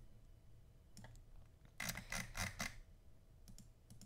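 Light clicks from computer controls over a faint steady hum: two about a second in, a quick run of four near the middle, and a few more near the end.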